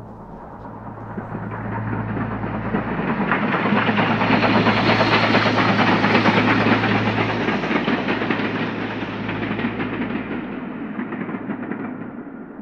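A train's rattling rumble swells to a peak about halfway through and then fades away, over a steady low hum.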